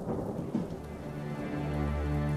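A steady rain-like hiss with a low rumble, and low held music notes coming in about a second in and growing louder.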